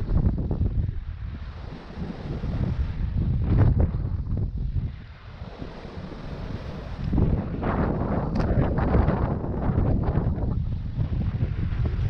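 Wind buffeting the microphone of a first-person action camera in gusts, a low rumble that eases about five seconds in and comes back stronger from about seven seconds to ten and a half.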